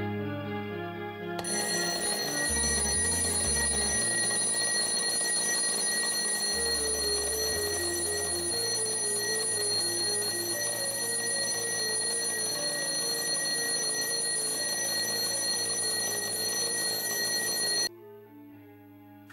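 Table alarm clock ringing continuously, a dense bright ring that starts about a second and a half in and cuts off suddenly near the end when it is stopped. The alarm is going off in the night at the wrong hour, which is taken as a sign that the timepiece is set wrong.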